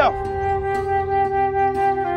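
Background score music: a wind instrument holding one long steady note over a constant low drone.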